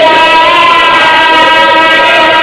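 A man's voice holding a long sustained chanted note through a loudspeaker system, heard as several steady tones held at fixed pitches.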